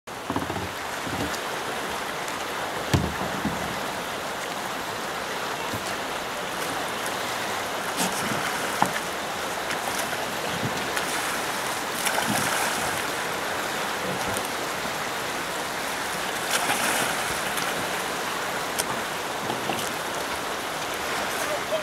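Steady rush of flowing river water, with several short splashes and knocks as a slalom canoe is capsized and rolled back upright with a paddle.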